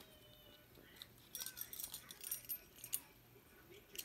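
Faint clinking and jingling of small hard objects being handled, a scatter of light clicks in the middle stretch.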